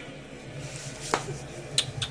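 A couple of sharp clicks, one about a second in and another near the end, over a low steady room hum; no barking.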